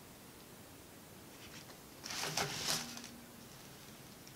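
Quiet room tone, then a brief soft rustling noise about two seconds in, lasting under a second.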